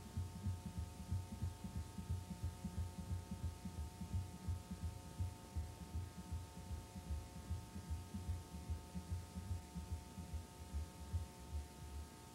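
Low, uneven throbbing, several soft thumps a second, over a steady electrical hum with a few thin steady tones.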